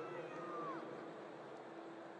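Stadium crowd murmur, with a brief high-pitched call that rises and falls in the first second, a spectator's shout or whoop.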